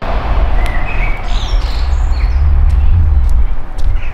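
Outdoor ambience: birds chirping a few times, over a loud, uneven low rumble.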